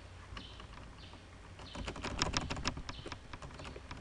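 Typing on a computer keyboard: a few scattered keystrokes, then a quick run of key presses about two seconds in.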